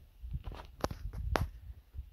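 Footsteps on rocky, brushy ground: a handful of short, sharp steps.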